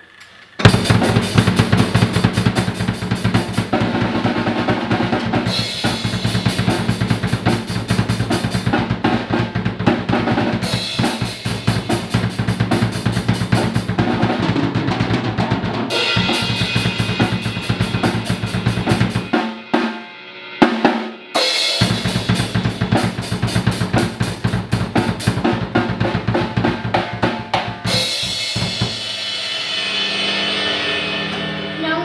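A child playing an acoustic drum kit: a fast run of bass drum, snare and cymbal strokes that starts about half a second in. It breaks off for about two seconds around two-thirds of the way through, with a single hit in the gap, resumes, and stops just before the end.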